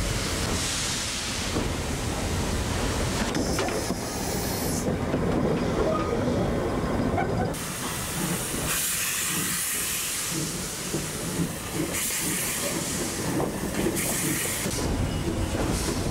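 Steam hissing on a Dübs-built Cape Government Railways 6th Class steam locomotive, heard from inside its cab. The hiss steps up and down abruptly a few times.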